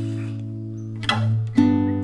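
Strummed acoustic guitar chords left to ring out, with a fresh strum about a second in and another half a second later.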